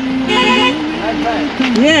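Vehicle engine running with a steady drone, and a short horn toot about half a second in.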